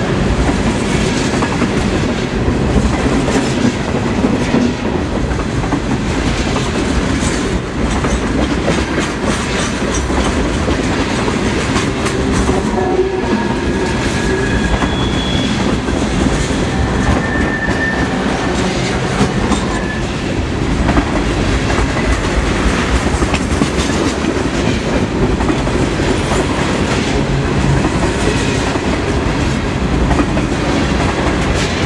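Loaded refrigerated boxcars of a CSX Tropicana juice train rolling steadily past at trackside: a continuous rumble with the clickety-clack of wheels over rail joints. A few brief high wheel squeals come midway.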